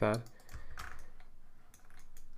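A few scattered key presses on a computer keyboard.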